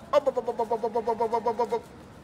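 A rapid, even vocal trill on one steady pitch, about nine pulses a second, lasting about a second and a half.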